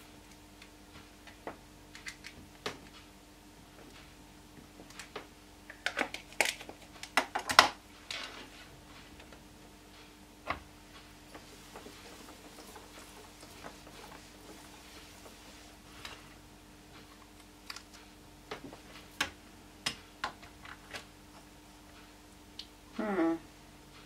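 Scattered light clicks and taps of rubber-stamping supplies being handled: a plastic ink pad case and the acrylic door of a stamp-positioning tool. A burst of louder knocks comes about six to eight seconds in.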